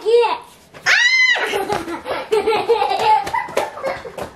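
A young child's voice: a high-pitched squeal about a second in, then babbling mixed with laughter.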